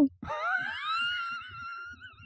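A high-pitched squeal that glides up in pitch for about half a second, then holds a steady high note for about a second, fading near the end.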